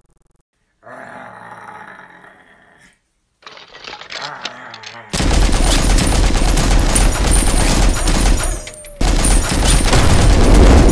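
Machine-gun sound effect firing in one long, rapid, continuous burst from about halfway in, breaking off for a moment near the end and then firing again.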